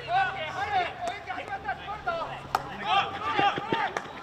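Voices calling out across a field hockey pitch, with sharp clacks of hockey sticks striking the ball: a strong one about two and a half seconds in and a few more near the end.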